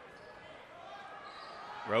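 Faint crowd and court noise in a basketball gymnasium, a low steady hubbub with faint distant voices and no distinct ball bounces.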